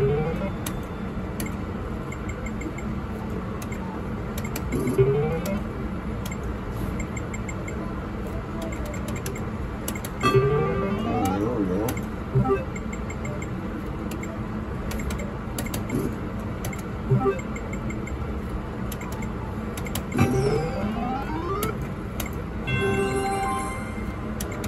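Electronic sound effects from an IGT video poker machine: short rising tone sweeps about every five seconds as hands are dealt and drawn, a longer cluster of tones around the middle as a winning round of flushes pays out, and a quick ladder of beeps near the end, over a steady casino background hum.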